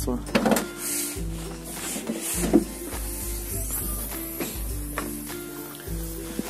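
Background music with sustained low chords, with a few short knocks mixed in.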